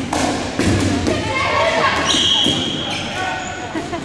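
Rubber dodgeballs bouncing and thudding on a hardwood gym floor, with players shouting in a large echoing hall. A high steady tone starts about two seconds in and lasts about a second.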